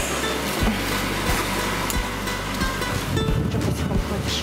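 Background music with a steady beat, about one and a half beats a second.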